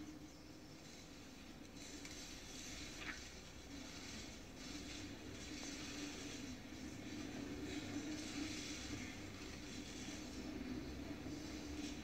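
Faint, steady applause from a parliament chamber, heard through a television's speaker.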